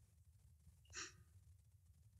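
Near silence on a video call, with one short faint breath about a second in.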